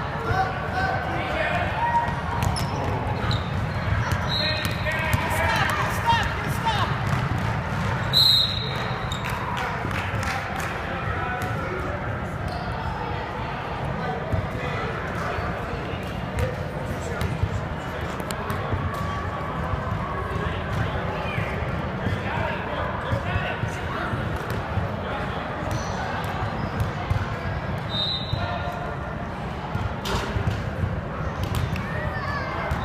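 Basketball bouncing on a hardwood gym floor during a game, with spectators' voices throughout. A few short high-pitched squeaks cut in, the loudest about eight seconds in.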